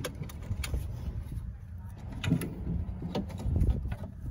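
Scattered light clicks and knocks of a plastic interior door handle unit being handled and fitted against the sheet-metal inner door of a 1995–98 Chevy pickup, over a low steady rumble.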